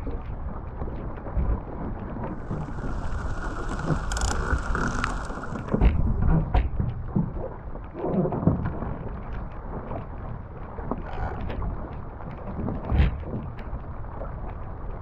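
Wind buffeting the microphone and water rushing along the hull of a small sailboat under way, with frequent small knocks from lines and deck gear being handled. A hissing spell comes in a few seconds in, and heavier thumps land about six seconds in and near the end.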